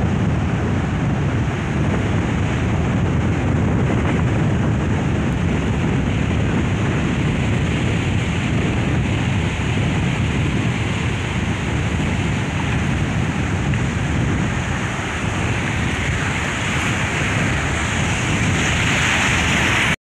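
Sea surf and wind buffeting the microphone, a steady rushing noise, with a wave breaking close by near the end.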